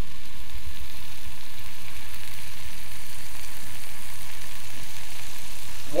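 Diced white onions sweating in butter in a pan, giving a steady sizzle.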